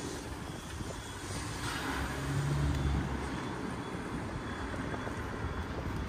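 City street background noise with a motor vehicle's low engine hum, loudest about two to three seconds in.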